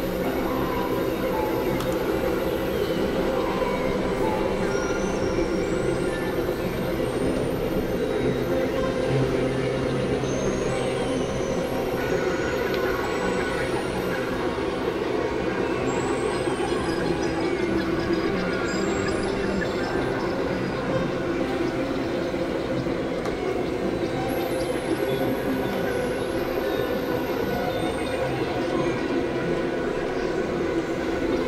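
Experimental electronic noise drone made with synthesizers: a dense, steady, grinding wash with its weight in the low-middle range. Short rising high-pitched glides flick across it from time to time.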